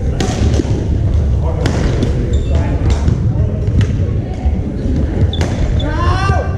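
Badminton rally: several sharp racket hits on the shuttlecock, roughly a second apart, over a steady rumble and the voices of players echoing around a large gymnasium.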